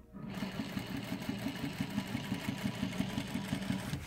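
Sewing machine running at a steady speed with an even, rapid stitching rhythm as binding is stitched down along a quilt edge. It starts just after the beginning and stops shortly before the end.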